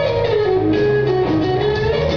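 Live blues-rock band playing an instrumental passage: an electric guitar lead line with notes bending up and down, over low bass notes and a drum kit.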